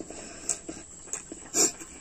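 Close-up eating sounds of a man chewing rice eaten by hand: a few short, sharp mouth clicks and smacks, with a louder smack about one and a half seconds in.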